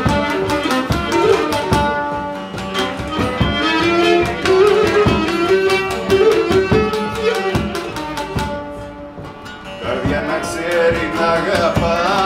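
Cretan lyra bowing a syrtos melody over strummed laouto and a large rope-tensioned drum keeping the beat. The playing thins and drops briefly about three-quarters of the way through, then the lyra player starts singing near the end.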